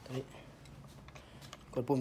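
Faint light clicks from handling the rear monopod under an airsoft sniper rifle's buttstock as its release button is pressed.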